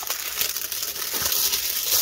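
Clear plastic wrap crinkling and crackling in a dense, continuous run as it is pulled and torn off a cardboard box.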